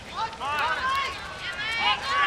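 Several people shouting at once, high raised voices overlapping, starting about a quarter second in and peaking near the end.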